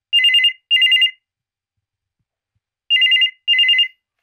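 Corded landline desk telephone ringing with an electronic trill between two alternating pitches, in a double-ring pattern: two short bursts near the start and two more about three seconds in.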